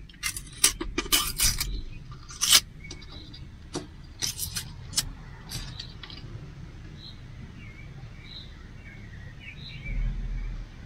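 A run of sharp clicks and taps over the first five seconds as a small glass jar of dried parsley is opened and handled. After that a steady low hum remains, with a few short, faint bird chirps.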